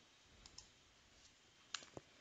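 Faint computer keyboard clicks as a short command is typed and entered: a few soft key taps about half a second in and a few more near the end, otherwise near silence.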